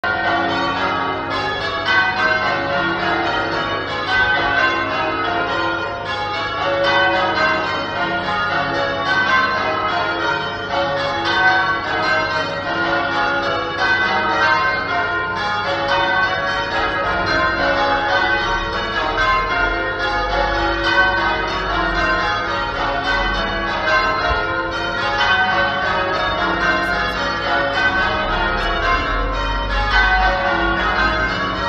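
Church bells being change-rung: a peal of tower bells struck in a rapid, even sequence, each stroke ringing on under the next.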